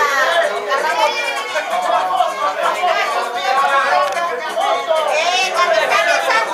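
Chatter of many people talking over one another, several voices overlapping without a break.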